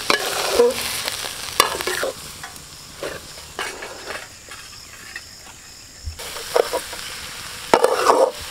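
Metal spoon scraping and clinking against a metal pot in irregular strokes as cauliflower and egg are stirred and broken up into a scramble, over a light sizzle of frying.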